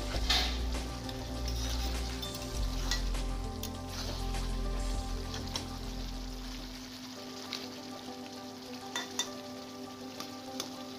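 Goat-meat and potato curry bubbling and sizzling in a metal kadai, with a spatula stirring and scraping against the pan in scattered clicks.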